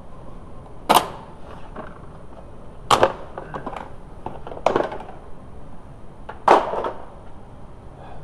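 Four short, sharp bangs about two seconds apart, each with a brief ring after it.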